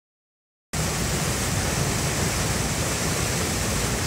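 River water rushing steadily over a weir, a continuous roar of falling water that cuts in suddenly under a second in after silence.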